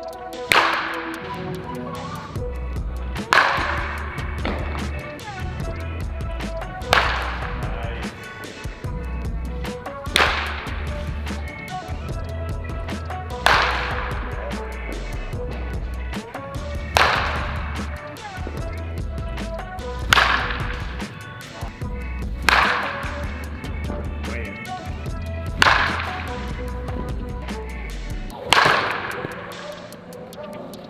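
A baseball bat cracking against pitched balls, about ten sharp hits roughly every three seconds, each echoing in the indoor hitting hall. Background music with a steady bass beat plays under the hits.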